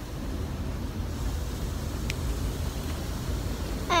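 Steady low rumble of a moving car heard from inside the cabin, road and engine noise with no other sound standing out, apart from a brief faint click about halfway through.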